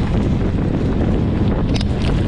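Wind buffeting the microphone of a mountain bike's on-board camera at speed, a heavy steady rumble mixed with tyre and gravel noise from the track. A short sharp click comes near the end.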